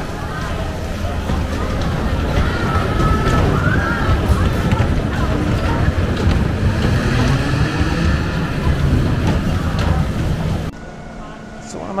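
Big Dipper wooden roller coaster train rumbling along its track through the station, with riders' and onlookers' voices and music over it. The rumble builds over the first few seconds and cuts off suddenly near the end.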